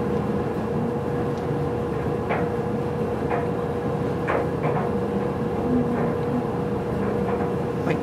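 Steady background hum and hiss, with a constant mid-pitched tone. A few faint short sounds come between about two and five seconds in.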